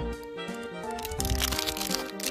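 Background music, and from about a second in, the plastic wrapper of a Nestlé Milkybar bar crackling and crinkling in the hands as it is picked up.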